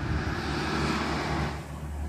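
Motor vehicle noise outdoors: a steady low rumble with a broad wash of noise that swells and then eases about one and a half seconds in, as of a vehicle passing.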